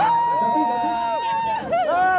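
A person's voice cheering: one long held shout, then several short excited whoops and calls.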